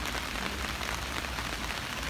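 Steady rain falling, a dense run of fine drop ticks, as if heard from under an umbrella over wet stone paving.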